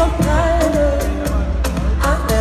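Pop song performed live: a woman sings the lead line over a steady beat with heavy bass.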